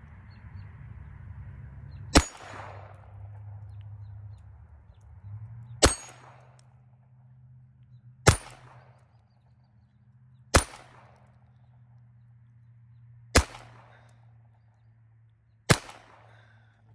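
Six single shots from a Walther P22 .22 LR pistol, fired slowly a few seconds apart at AR500 steel plate targets. Each sharp crack is followed by a short metallic ring, fitting a hit on the steel.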